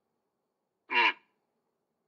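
A single short spoken 'un', a Japanese murmur of assent, about a second in.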